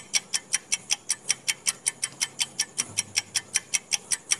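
Countdown-timer sound effect: fast, even clock-like ticking, about six ticks a second, starting abruptly with a louder first click.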